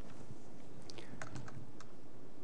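A few faint, irregular taps on a laptop keyboard, bunched about a second in, over steady room hiss.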